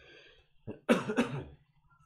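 A man coughing, a short cough and then two louder ones about a second in.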